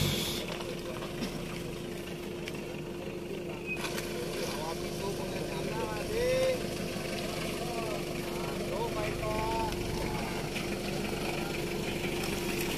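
An engine idling steadily, giving a constant hum, with faint voices in the distance.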